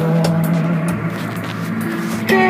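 Background music: a held low note under a sustained chord, with faint ticking percussion.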